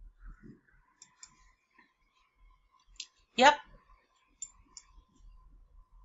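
Quiet pause with a few faint, scattered clicks and a faint steady high tone underneath; a woman says a single 'yep' about three and a half seconds in.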